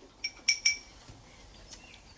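A metal teaspoon clinking against the side of a glass of water while stirring: three bright, ringing clinks within the first second or so.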